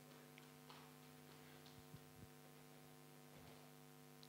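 Near silence: a faint steady electrical hum, with a few faint ticks.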